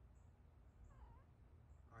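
Maine Coon cat giving one short, faint meow about a second in.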